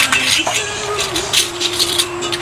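Short clinks and clatter of serving utensils against metal food trays and takeaway boxes, over a thin steady background tone that shifts slightly in pitch.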